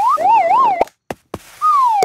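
Cartoon slide-whistle sound effect tracking a rolling golf ball. The whistle wobbles up and down three times, cuts off before halfway with a few small clicks, then falls in one long glide near the end.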